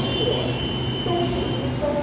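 Taiwan Railway electric local train arriving at a platform, running slowly with a steady high-pitched squeal and a whine that keeps shifting in pitch.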